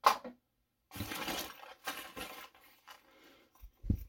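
Rummaging in a cardboard box of chainsaw parts: packaging rustling as an orange fabric tool pouch is lifted out, with a sharp knock at the start and a dull thump near the end.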